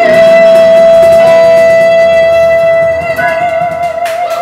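A woman's voice holding one long, high closing note of a song, steady at first and then with vibrato over about the last second.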